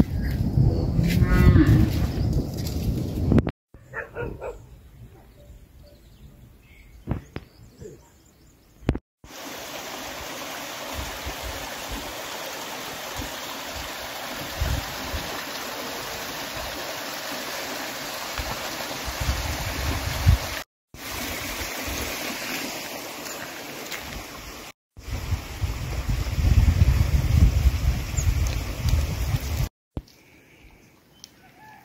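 Farm animals calling with a few short calls, over a steady hiss and a loud low rumbling that is strongest near the start and again near the end. The sound breaks off abruptly several times.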